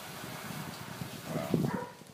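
A dog making a few short, faint vocal sounds about one and a half seconds in, over a low steady background hiss.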